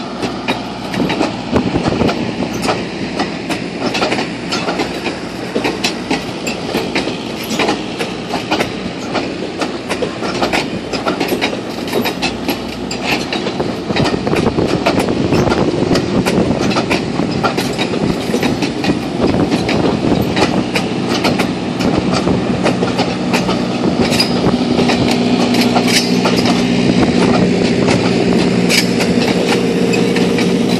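Streamlined stainless-steel passenger cars rolling slowly past, their wheels clicking irregularly over rail joints with a steady rumble. It grows louder toward the end, where a steady low hum joins in.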